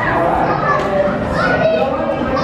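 Young children's voices calling out and chattering, high-pitched and without clear words.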